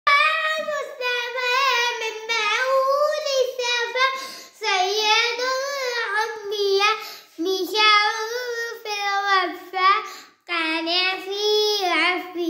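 A young girl singing solo and unaccompanied, a melodic chant-like song in long phrases with brief pauses for breath between them.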